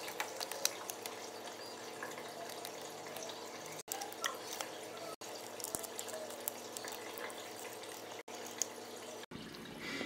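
AeroGarden Bounty Elite hydroponic garden's circulation pump humming steadily, with water trickling in its reservoir and faint ticks of hands handling the seedling pods.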